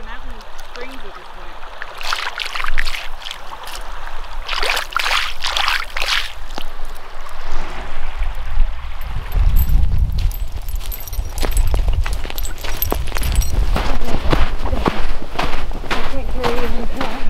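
Small lake waves lapping and sloshing at a sandy shore. From about halfway through, wind rumbles on the microphone, and crunching footsteps on sand come in toward the end.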